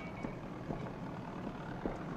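Steady construction-site background noise with a few faint knocks scattered through it.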